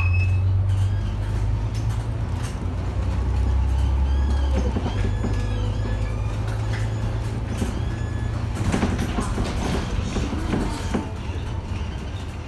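Interior of a moving city bus: the engine's steady low drone, which eases about five seconds in, with rattling and creaking from the bus's fittings that thickens around nine to eleven seconds in.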